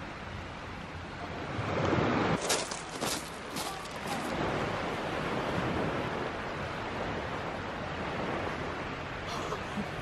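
Small sea waves washing onto a pebble beach, with a louder surge about two seconds in followed by a brief run of sharp clicks.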